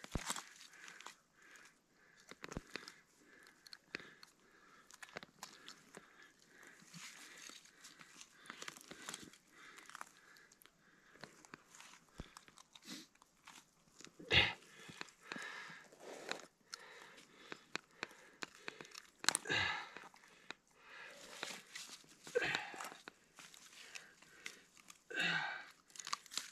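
Faint, scattered clicks and crackles of hands working a fish free of a gillnet on snow and ice, with a few louder bursts of handling noise now and then.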